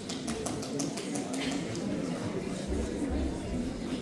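Audience chatter murmuring in a large hall, with a quick run of sharp clicks or taps in the first second and a half.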